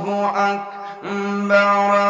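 A man's voice chanting the adhan, the Islamic call to prayer, in long held notes with short breaks and slides in pitch between them, dipping quieter briefly around the middle.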